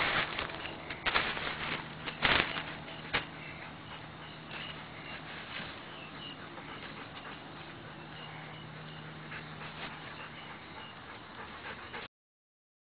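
A dog barking four times in the first three seconds, then quieter background with faint, short high chirps.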